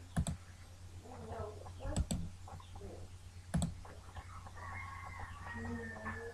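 Computer mouse clicks, each a quick double tick of press and release, three times within the first four seconds, over a steady low electrical hum.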